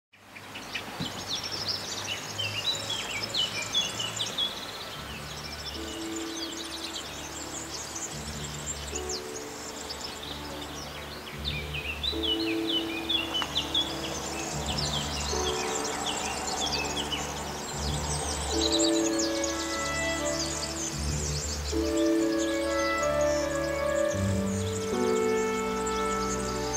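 Small birds chirping in many quick, high calls, with background music of long, slow held notes coming in about five seconds in and growing fuller later on.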